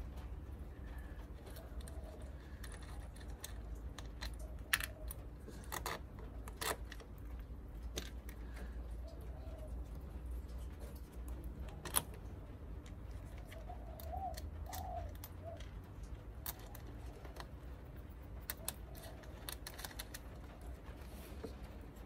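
Scattered small metallic clicks and light rattles as harness ring terminals and their nuts are fitted by hand onto an auxiliary battery's terminal studs and run up finger tight, over a low steady background hum.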